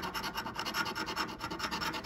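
A large metal coin scraping the silver latex coating off a scratch-off lottery ticket in rapid, even back-and-forth strokes, many to the second.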